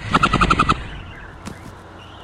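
Burst of rapid machine-gun fire, about a dozen shots in under a second, dying away into a quieter tail with one more single crack about a second and a half in.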